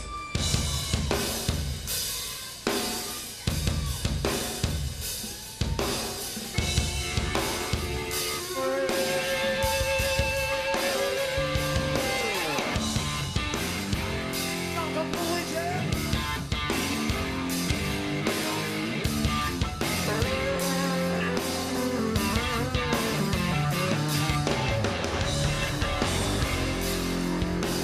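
Live rock band playing the opening of a song: the drum kit starts with snare and bass drum hits, and electric guitar and bass guitar come in after several seconds, with held guitar notes and a falling slide, after which the full band plays on.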